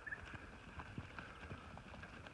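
Hooves of a mob of Merino ewes stepping on dry, hard dirt as they walk past: many small, irregular, overlapping knocks. A brief high chirp sounds right at the start.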